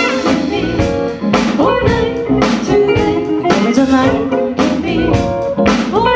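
Live band music: a drum kit keeps a steady beat under electric bass, keyboard, guitar and a horn section, with no sung words.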